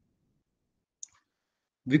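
A single short click about a second in, in an otherwise silent pause; a man's voice starts speaking again at the very end.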